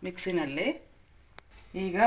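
Speech: a person talking in Kannada, with a short pause and a single sharp click about a second and a half in.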